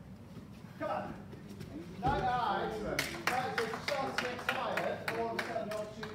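Indistinct men's voices in a hall, with a quick run of sharp impacts from about halfway through.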